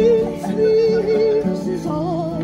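A woman singing to a strummed acoustic guitar: one long held note with vibrato, then a shorter wavering phrase.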